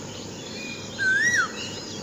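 Birds chirping, with one bird's clear whistled note rising and falling about a second in, among several shorter, higher chirps.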